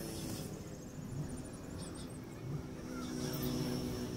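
Faint, steady hum of a vehicle engine, with a few faint high chirps over it.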